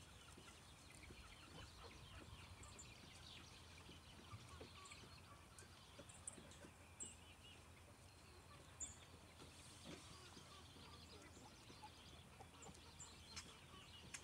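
Faint, scattered clucking from penned roosters, with a few soft ticks and short high chirps over a quiet background.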